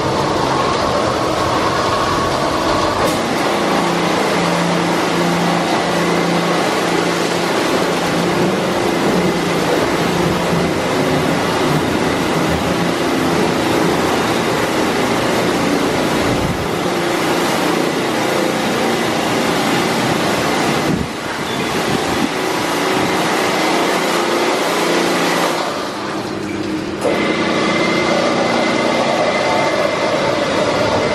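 PDQ Tandem automatic car wash at work: spinning side brushes and water spray beating on a car, over a steady machine hum. The loud, even wash noise dips briefly twice in the second half.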